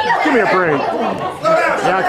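Several voices talking and calling out over one another, chatter rather than one clear speaker.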